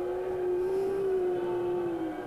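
A sustained synthesized drone: one held note with fainter overtones, swelling slightly in the middle and fading near the end.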